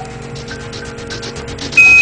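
Apollo air-to-ground radio carrying a low, steady hum and hiss. Near the end comes a short, clean, high beep of about a quarter second: a Quindar tone, the signal that marks a radio transmission being keyed on the Apollo voice loop.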